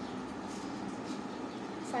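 Steady background noise with no distinct events, with a man's voice starting at the very end.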